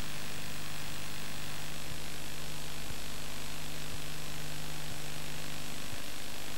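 Steady hiss with a low mains hum and no programme sound: the background noise of an old videotape recording.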